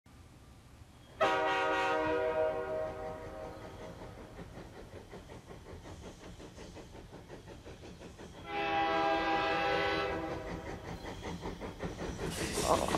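A train horn sounds two long blasts, each a chord of several steady tones, about a second in and again near the end. Under the blasts runs the steady rhythmic clatter of a moving train.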